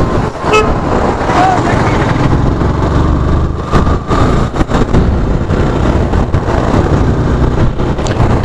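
Yamaha FZ-V3's single-cylinder engine running at cruising speed, with wind rushing over the mic, in city traffic. A vehicle horn toots briefly a few seconds in.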